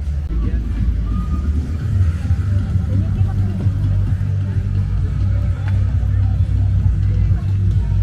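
Outdoor roadside ambience: a steady low rumble with faint music and voices behind it.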